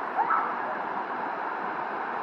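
Steady rush of a waterfall, an even noise with no breaks, with a brief faint rising tone near the start.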